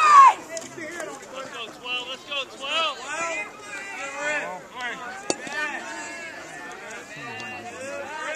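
Indistinct overlapping chatter of several voices, with one sharp click about five seconds in.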